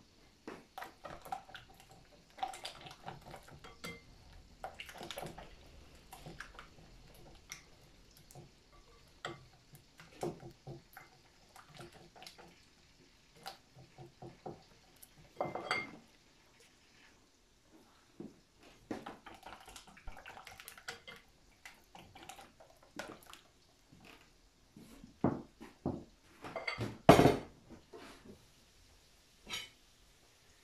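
Dishes and utensils being handled on a kitchen counter: scattered, irregular clinks and knocks of bowls and utensils set down and moved. A louder clatter comes about 27 seconds in.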